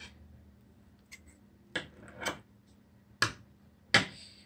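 A few sharp clicks and taps from hands handling yarn and craft items on a tabletop, about five over four seconds, the loudest at the very end.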